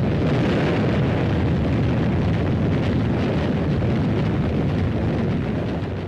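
Sustained rumbling roar of battle noise, a dense continuous din of explosions and gunfire blended together with no single shot standing out; it eases slightly near the end.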